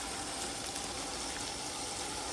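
Steady hiss of water from a garden hose spraying onto a stucco wall, rinsing off a bleach-and-soap mold treatment.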